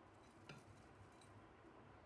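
Near silence: quiet room tone, with one faint soft click about half a second in as shredded cabbage is tipped from one bowl into another.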